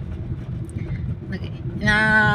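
Car driving, heard from inside the cabin: a steady low rumble of engine and tyres on the road.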